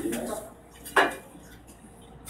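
Two short, sharp clinks about a second apart, over faint background talk.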